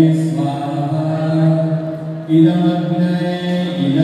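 A group of voices chanting Sanskrit mantras together in unison, holding long steady notes, with a short break for breath a little after two seconds in.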